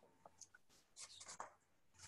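Near silence on a videoconference line, with a low hum and a short cluster of faint scratchy sounds about halfway through.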